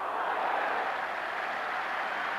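Steady crowd noise from spectators in a football stadium, an even wash of many voices with no single sound standing out.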